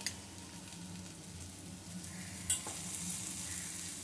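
Onions, tomato and capsicum frying in oil in a kadai with powdered spices: a steady, moderate sizzle. A single short click sounds about two and a half seconds in.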